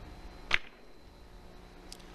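A three-cushion billiard cue strikes the cue ball once: a single sharp click about half a second in, with a much fainter ball click near the end. The shot is played with a lot of spin.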